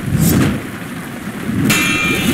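Heavy rain with a rumble of thunder, then a sudden loud crash about a second and a half in.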